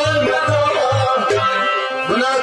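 Kashmiri folk song performed live: a man singing in a wavering, ornamented voice over an electronic keyboard. A low beat pulses about twice a second and drops out about a second and a half in.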